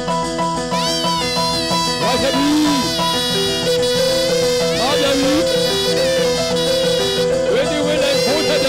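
Traditional Burmese ringside music for a Lethwei bout: a reed wind instrument plays a sliding, wavering melody over steady held tones.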